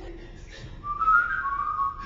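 A person whistling a short high phrase of a few held notes, stepping up and then down, starting about a second in after a quieter moment in the music.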